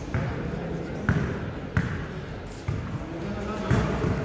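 A basketball being dribbled on a hard court: several sharp bounces, roughly a second apart, with voices behind.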